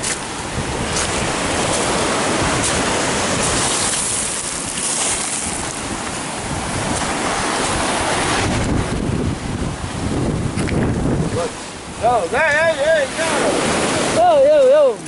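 Surf washing up a pebbly shore in a steady rush, with wind on the microphone.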